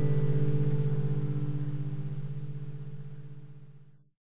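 The final chord of a strummed acoustic guitar ringing out and fading away, ending the song; it dies out just before the end.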